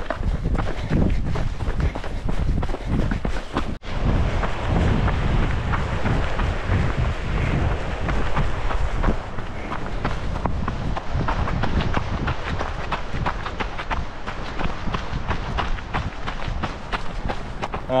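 Running footsteps on a dirt trail, a quick rhythm of footfalls, under a constant low rumble of wind and movement on a handheld camera's microphone, with a brief dropout about four seconds in.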